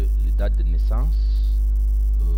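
Loud, steady low mains hum running under the recording, with a short hesitant 'euh' from a man's voice about a second in.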